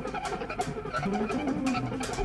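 Quiet passage of a live band jam: low notes sliding up and down, with faint cymbal ticks above.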